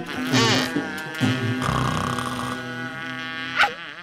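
Cartoon character voice cries: a short rising-and-falling yelp, then a long held note, over background music.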